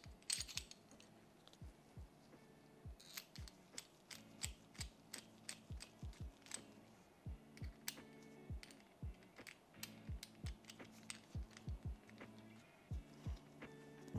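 Small, irregular metal clicks and ticks from a hex key turning the screw of a CPU delidding tool as its slider pushes the heat spreader of an Intel i9-13900KS loose. Faint background music with a beat runs underneath.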